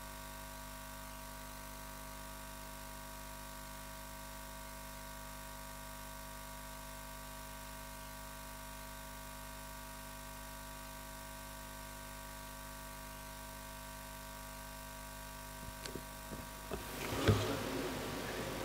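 Steady electrical hum and hiss from the auditorium's sound system with an open microphone, several steady tones at once. Near the end, a few knocks and rustles at the podium microphone.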